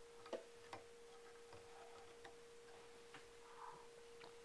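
Near silence: a faint steady hum with about five faint light ticks, the loudest near the start, from fly-tying tools and materials being handled at the vise.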